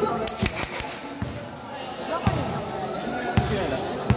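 Basketball bouncing on a court floor as it is dribbled, a string of unevenly spaced bounces.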